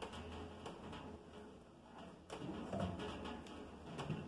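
Quiet handling of a plastic ball-lock disconnect on a Cornelius keg post, with one sharp click a little over two seconds in.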